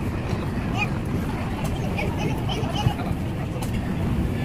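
Busy food-court background: a steady low hum with indistinct chatter of other diners, and one small click about three seconds in.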